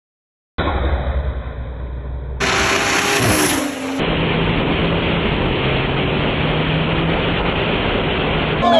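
Two BMW cars, an M340 and a 540, racing side by side at full throttle, heard mostly from a car-mounted camera: a steady engine drone under heavy wind and road rush. The sound starts suddenly about half a second in and changes abruptly twice as the footage cuts between recordings.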